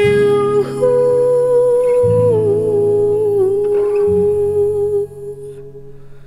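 A woman's voice sings long wordless notes, held and gliding slowly down in pitch, over acoustic guitar chords strummed about every two seconds. The voice stops about five seconds in, leaving the guitar ringing.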